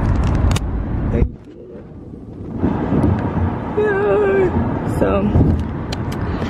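Road noise inside a moving car's cabin on the highway, a dense low rumble. It drops off abruptly about a second in and builds back by the middle, with a voice heard over it a few seconds in.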